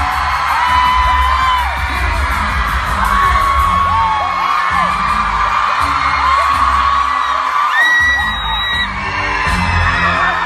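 Live pop concert heard from among the audience: loud amplified music with heavy bass, and long high-pitched screams from fans over it.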